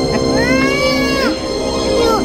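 Background music with a single high-pitched voice that slides up and back down for about a second near the middle.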